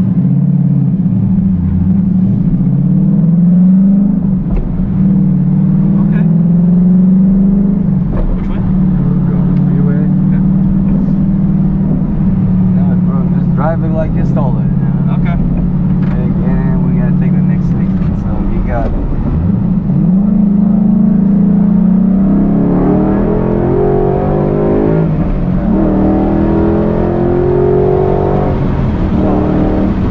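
2012 Ford Mustang GT's 5.0 V8 with an aftermarket exhaust, heard from inside the cabin while driving. The engine note rises as the car accelerates a couple of seconds in, runs at a steady drone, then rises again about two-thirds of the way through, with several more climbs near the end.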